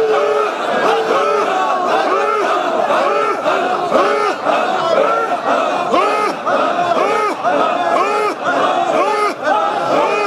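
A large crowd of men chanting and shouting loudly together in a continuous stream of rising-and-falling calls.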